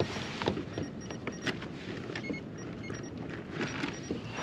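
Steady wind and water noise around a small fishing kayak under way, with a few light handling clicks and rustles.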